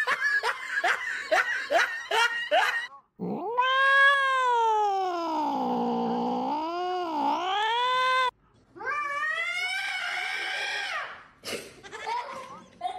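Cats in a standoff caterwauling: one long, wavering yowl of about five seconds starting about three seconds in, then, after a brief pause, a second rising yowl.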